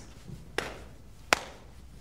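Two sharp knocks, a little under a second apart, the second louder.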